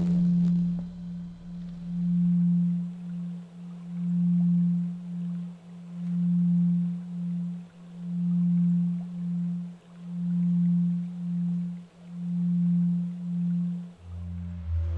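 Ambient background music: a single low, pure tone that pulses in a slow, even rhythm, a longer swell followed by a shorter one about every two seconds.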